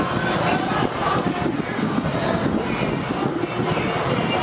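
Gas-fired glory holes and furnace burners with their blowers running, a steady loud rumbling noise without let-up.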